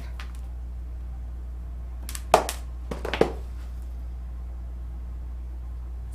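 A steady low electrical hum, with two short clusters of sharp clicks and taps a little after two and three seconds in, from makeup tools being handled.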